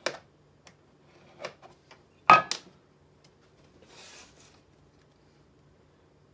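A pencil is run around a round metal tin lid held on a thin wood strip on a workbench: a few small clicks and knocks, one sharp double clack a little over two seconds in, and faint scratching of the pencil near four seconds.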